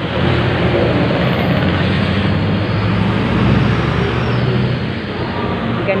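Street traffic with a motor vehicle's engine running close by, a steady low hum over the general road noise, easing off after about four seconds.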